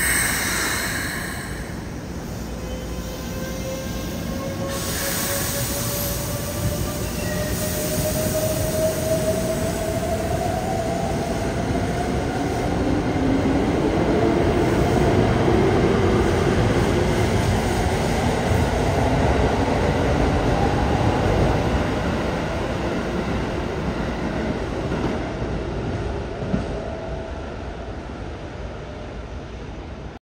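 Keikyu 600 series electric train pulling away. A brief hiss at the start, then its Mitsubishi GTO-VVVF inverter whine rises steadily in pitch as it accelerates. The cars then roll past loudly, and the sound fades as the train leaves.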